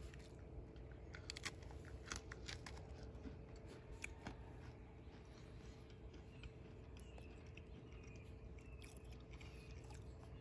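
Faint crunching and chewing of a very hard military ration biscuit spread with jam, the crunches coming mostly in the first few seconds and thinning out after.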